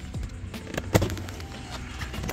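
A rubber car floor mat being pulled up and handled in the footwell, with scuffs and a sharp knock about a second in, over steady background music.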